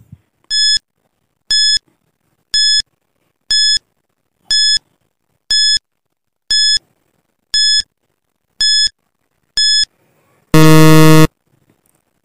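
A 10-second countdown timer sound effect: ten short, high electronic beeps, one a second, then a loud, lower buzzer lasting under a second that marks time up.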